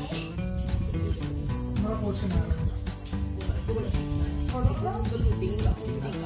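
Background music over a steady, high-pitched drone of insects.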